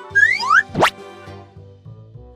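Children's background music with a steady beat, overlaid in the first second by cartoon sound effects: two quick rising chirps, then one fast, steep upward glide.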